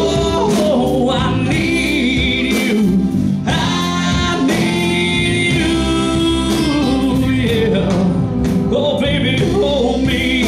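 A live band playing, with electric guitar, keyboard and drums under a lead melody of long, wavering, bending notes.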